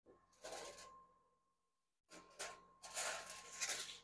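Aluminium foil rustling and crinkling in short bursts as it is lifted off hot casserole pans at an open oven, with a faint steady high hum underneath.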